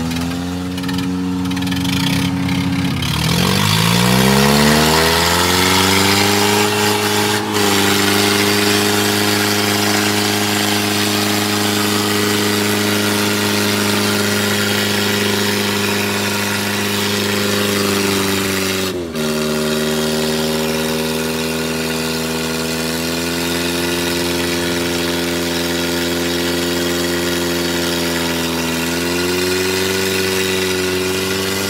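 Mahindra 575 DI tractor's four-cylinder diesel engine working under heavy load, pulling against a second tractor chained to it in a tug-of-war. The engine revs up with a steeply rising pitch in the first few seconds, then strains at a steady pitch. About two-thirds of the way through, the pitch drops suddenly to a lower steady note.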